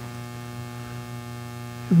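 Steady electrical hum with a stack of evenly spaced overtones, unchanging throughout. It is mains hum picked up in the sound system's audio feed.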